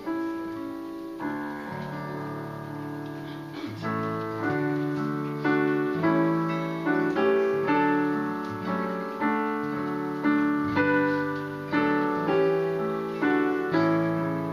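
Digital piano playing a tune in full, sustained chords, softly at first and then louder from about four seconds in, with a chord struck about every three-quarters of a second.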